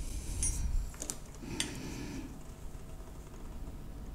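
A few small clicks and taps of metal tweezers on a circuit board, about half a second, one second and a second and a half in, over a faint steady background, while a capacitor is lifted off with hot air.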